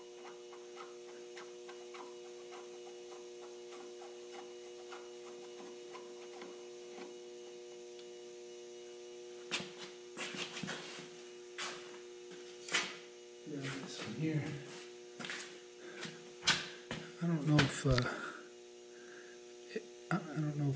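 Steady electrical hum with two tones. From about halfway, a run of irregular small clicks and clinks as a brass fuel-return pill (jet) is worked out of its fitting by hand and a pick.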